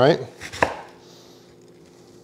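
Chef's knife chopping through a wedge of raw green cabbage onto a wooden cutting board, with a sharp knock of the blade on the board about half a second in.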